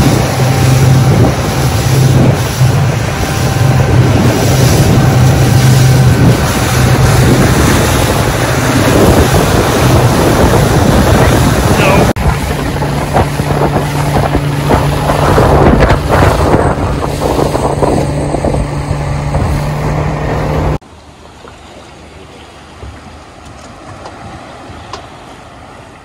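Power boat engine running at speed, a steady low engine tone under loud wind buffeting on the microphone and rushing water from the wake. About twenty seconds in it cuts off suddenly to a much quieter, faint wash of water.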